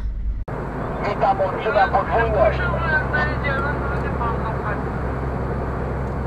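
Steady low drone of a lorry's engine and tyres heard inside the cab at motorway speed, starting abruptly about half a second in, with a voice heard over it.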